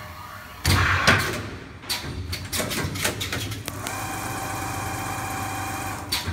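Automatic double-flyer armature winding machine cycling: a loud rush of noise with a thud about a second in and a run of mechanical clicks and knocks as its fixtures move, then from about four seconds a steady whine of the machine running, as of the flyers winding the wire.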